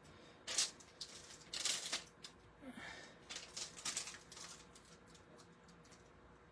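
Clear plastic stamp sheet being handled, with stamps peeled off it: a few short bursts of crinkling and small clicks about half a second in, around two seconds in and again around three to four seconds in.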